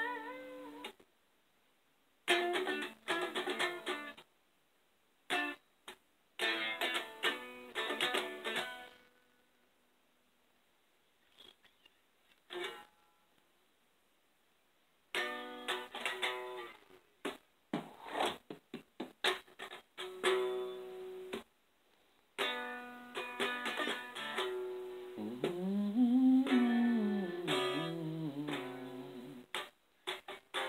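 Guitar music: plucked notes played in short phrases broken by silent pauses, the longest about six seconds in the middle. Near the end a pitch slides up and then down.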